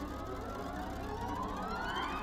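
Dark horror music: a low, dense drone with a thin, siren-like tone gliding slowly upward in pitch.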